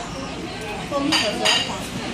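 Cutlery clinking against ceramic plates and bowls as people eat at a table, with two sharp clinks close together a little after a second in.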